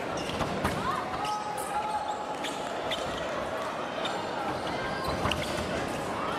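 Busy sports-hall ambience of background voices, with fencers' shoes squeaking and thudding on the piste during footwork and scattered sharp clicks.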